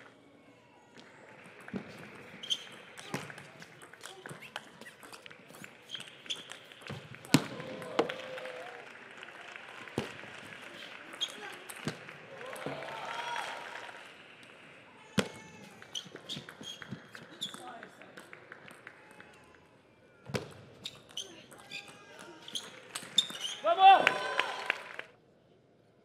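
Table tennis rallies: the celluloid-type ball clicks sharply off the paddles and the table, with a background murmur of voices in the hall. A loud vocal shout comes near the end.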